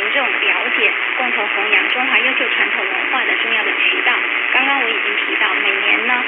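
Mandarin news talk from Southeast Broadcasting Company's 585 kHz AM medium-wave broadcast, received from a long way off. The voice is cut off above about 4 kHz and runs over a steady hiss of static.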